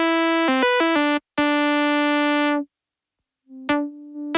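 Elektron Analog Four analog synthesizer played from its trig keys: a run of short, bright notes at changing pitches, then one note held for about a second. A gap of silence follows, then notes start again near the end.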